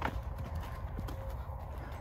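A few soft hoof strikes from a young quarter horse filly moving about on dirt, over a low background rumble.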